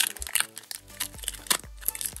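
Foil wrapper of a Pokémon booster pack crinkling in the hands as it is opened, with several sharp crackles, over background music.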